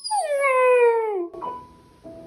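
Puppy howl: one long, loud call that starts high and slides steadily down in pitch over about a second. The piano music drops out under it and comes back just after.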